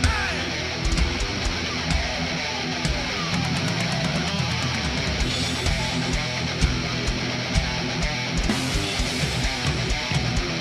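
Live metal band playing loud: heavily distorted electric guitars over bass and a drum kit.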